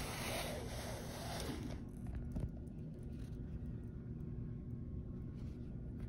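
A hand iron pushed along a folded cotton quilt binding, its sole rubbing over the fabric in a steady hiss that stops about two seconds in. A light knock follows, then only a low steady room hum.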